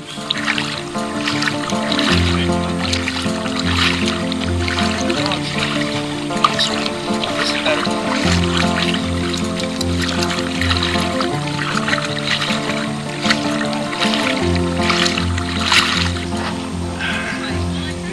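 Background music: held chords changing every second or two over a repeating bass line.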